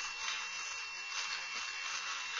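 Dremel Stylus cordless rotary tool running at a low speed setting, its bit grinding into a white plastic model part: a steady high whine over an even grinding hiss.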